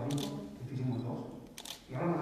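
Camera shutter clicks, twice (once just after the start and again near the end), over a man speaking into a microphone.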